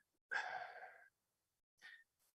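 A man's breathy sigh into a microphone, under a second long, followed near the end by a faint short breath.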